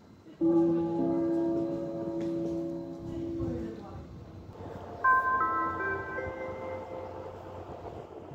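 Signal chimes of a railway station's INISS public-address system. A low chime of several held notes sounds about half a second in and slowly fades. A second, higher-pitched chime follows about five seconds in.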